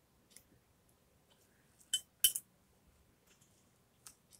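Paintbrush knocked against a glass water jar while being rinsed: a faint tick, then two sharp clinks with a short ring about two seconds in.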